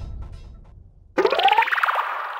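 Background score fading out, then about a second in a sudden comic sound effect: a twanging tone that glides upward in pitch with a fast flutter and dies away.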